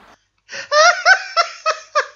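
A person laughing: a run of short high-pitched "ha" pulses, about three a second, starting about half a second in.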